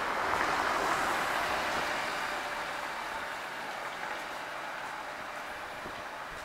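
Noise of an unseen passing vehicle, swelling in the first second and slowly dying away.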